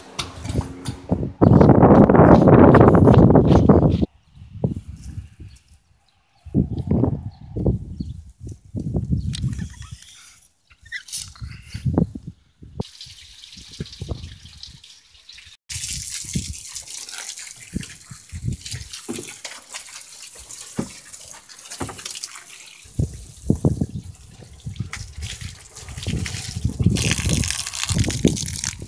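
Garden hose spraying water onto wooden deck boards: a steady hissing splash through the second half, broken by low thumps of handling and footsteps. A loud rushing noise fills the first few seconds.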